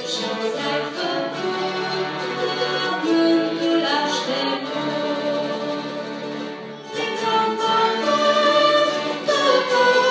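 A church string orchestra and choir performing together, with sustained singing over bowed strings. The music dips softer just before about seven seconds in, then swells louder.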